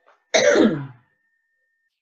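A single short vocal sound from one person, about half a second long, sliding down in pitch, like a throat-clearing noise or a drawn-out 'ehh'.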